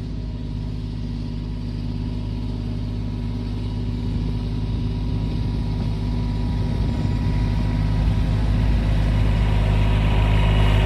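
Mahindra compact diesel tractor with a front loader and pallet forks, its engine running steadily as it drives closer, growing gradually louder.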